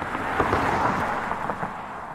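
A rushing, rumbling noise-swell sound effect that builds, peaks about half a second to a second in, and then slowly fades away.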